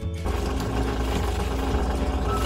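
Wire whisk beating gram-flour batter in a stainless steel bowl, a fast continuous run of clicks and scrapes against the metal, over background music.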